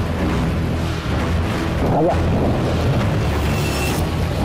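Background music with a heavy, steady bass.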